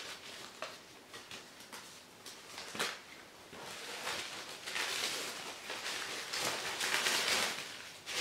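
Paper and packaging rustling and crinkling as a handbag's wrapping is handled, with a few sharp clicks; the rustling gets denser and louder from about four seconds in.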